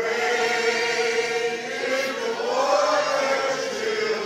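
A congregation singing together in slow, long-held notes.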